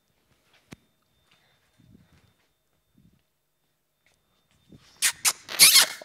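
Near silence on a stage, broken by a single sharp click about a second in. About a second before the end, loud short rough bursts start together with a man saying "okay".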